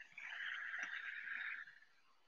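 Trading card being handled: a brief sliding, rustling sound lasting about a second and a half, stopping shortly before the end.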